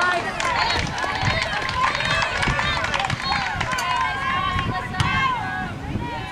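Several voices calling and shouting at once across a soccer pitch during play, overlapping so that no clear words come through, with scattered low thumps underneath.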